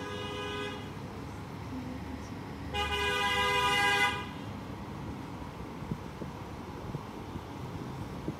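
A vehicle horn sounding twice over low street-traffic noise: a short toot at the start, then a longer, louder one about three seconds in, lasting about a second and a half.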